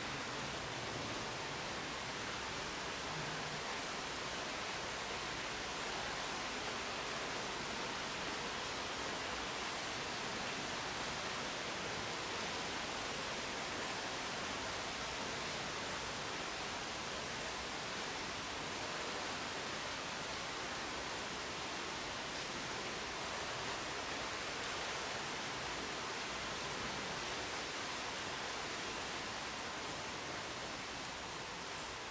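Steady, even hiss with no distinct sounds: the background noise and room tone of an unattended monitoring recording.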